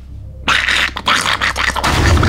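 A creature sound effect for the Krite puppet: a harsh, raspy hiss with rapid chattering scratches that cuts in suddenly about half a second in, over a low scary-music drone.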